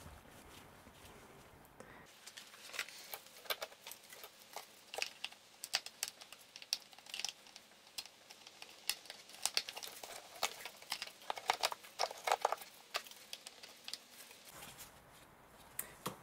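Light, irregular clicks, taps and rustles of gloved hands handling and seating an engine control unit on a plastic airbox housing.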